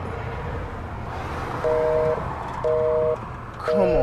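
Telephone busy signal heard from a phone held to the ear: a two-tone beep, half a second on and half a second off, three beeps starting about one and a half seconds in, meaning the line is busy.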